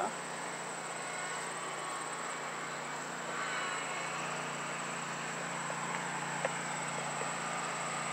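Steady high-pitched insect chorus over a low, even hum, with a few faint ticks late on.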